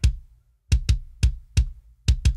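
A soloed sampled kick drum from a MIDI-programmed kit playing a short pattern of about five hits, each one short and dying away fast. Every hit is identical and dry, pretty damn perfect, which is the machine-like evenness that gives away programmed drums.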